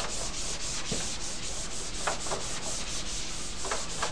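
A handheld eraser scrubbing across a whiteboard in quick, even back-and-forth strokes, a steady rubbing sound.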